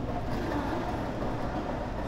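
Steady shopping-mall background noise: an even wash of indoor ambience over a low, constant hum.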